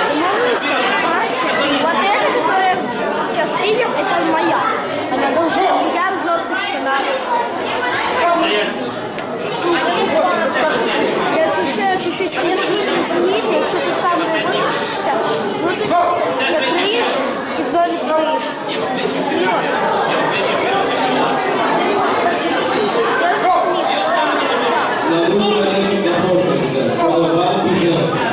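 Many people talking at once in a large hall: a steady chatter of overlapping voices with no single speaker standing out.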